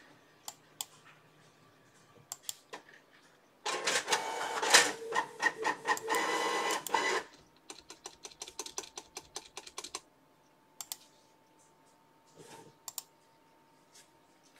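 Computer keyboard typing: scattered key clicks, then quick runs of clicks for a couple of seconds. About four seconds in, a louder stretch of dense clattering noise lasts roughly three seconds.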